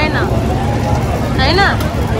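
A Break Dance fairground ride spinning, its running machinery a steady low rumble under the voices of people around it. A voice calls out briefly, rising and falling, about one and a half seconds in.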